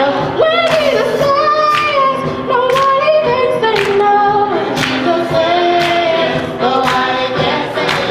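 Youth gospel choir singing, with a girl's solo voice leading on a microphone over the choir.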